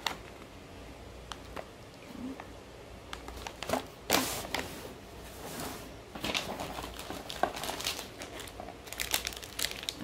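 Plastic snack wrappers crinkling and rustling as they are handled and pulled from a cardboard box, with scattered small clicks. The rustling is loudest about four seconds in and again near the end.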